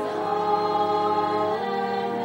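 Choir singing long held chords, moving to a new chord about one and a half seconds in.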